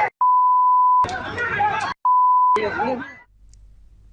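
A steady high beep, the broadcast censor tone blanking out words, sounds twice: first for nearly a second, then for about half a second, with speech in between and just after. About three seconds in, the sound drops to a low hum.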